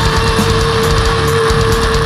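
Heavy metal band recording: distorted electric guitars and drums playing loudly, with one long held note sustained over the top.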